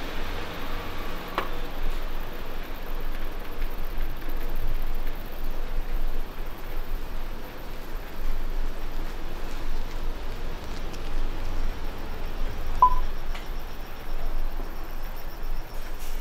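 Steady city street ambience as someone walks along a quiet street, with a short high tone about three-quarters of the way through.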